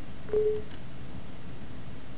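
A single short electronic beep, one steady tone about a quarter-second long, sounds about a third of a second in. Two faint clicks follow it, over a steady low hiss.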